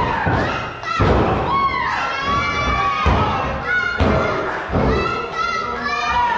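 About four heavy thuds of wrestlers hitting the ring mat and landing blows, the first about a second in, over a crowd that keeps shouting, children's voices among it.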